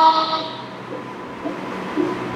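A loud, steady, horn-like tone held at one pitch that cuts off about half a second in, leaving a faint hum.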